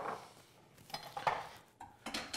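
Small kitchen handling sounds: a few light knocks and scrapes of dishes and utensils being set down on the counter, a cluster about a second in and another near the end.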